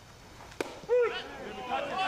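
A baseball pitch smacks once into the catcher's mitt about half a second in. Loud shouted voices from the field follow, the first one the loudest.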